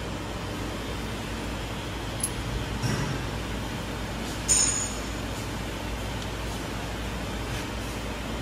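Steel coin-die parts clinking together: a few light clicks, then one sharp metal-on-metal clink about halfway through as the die cap is seated on the die ring. Underneath is a steady low hum from the hydraulic coin press's power pack running.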